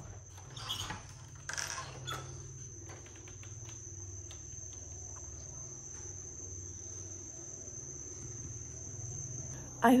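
Tropical jungle insects keep up one steady, high-pitched drone. Two short noises come about a second apart near the start.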